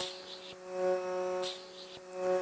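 Vacuum therapy (cupping) machine's suction pump running with a steady electric hum, briefly swelling louder near the middle.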